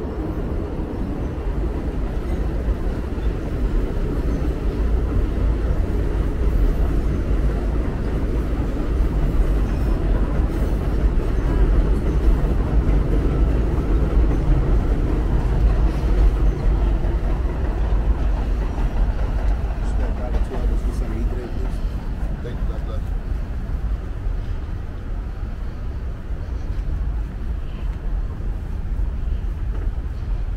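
Elevated subway train running along a steel viaduct: a steady rumble that swells in the middle, over city traffic.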